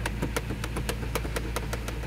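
Toyota truck engine idling, with a steady rapid ticking of about seven ticks a second over a low hum; the engine has a misfire.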